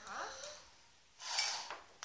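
A short puff of breath blown into a drinking glass, a hiss that lasts about half a second, a little over a second in: a child demonstrating blowing a small ball out of a glass.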